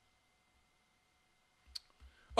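Near silence: room tone, with a single brief click near the end.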